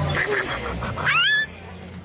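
A toddler laughing in quick bursts, then a high squeal that rises sharply in pitch and breaks off about a second and a half in, over a steady low hum.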